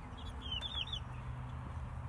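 A bird chirping: a quick run of about five short, high, falling notes within the first second, over a steady low background rumble.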